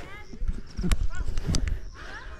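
Footsteps of a person walking uphill on a dirt path, with two heavy thuds about a second and a second and a half in. A few faint high chirps sound in the background.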